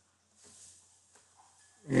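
Near silence: room tone, with a faint short sound about half a second in and a faint click a little past one second. A man's voice begins right at the end.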